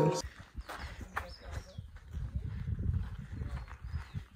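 Footsteps crunching on a dirt and gravel trail, with irregular steps and a low rumble underneath.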